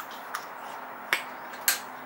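Three light clicks and clinks from handling the removed pump cartridge and tools on a metal workbench.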